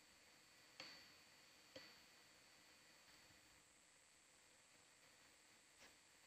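Near silence, broken by two faint clicks about a second apart near the start, each with a brief high ring.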